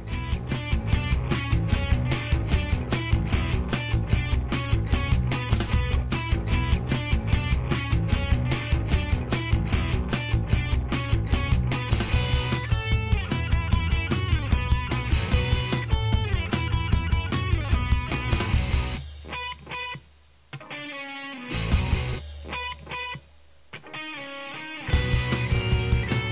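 Rock background music with electric guitar and a steady beat. About nineteen seconds in it thins out and drops in level, then the full band comes back near the end.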